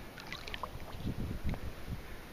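Water sloshing and small splashes around a large rainbow trout held at the surface, with irregular low rumbling on the microphone, strongest about a second in.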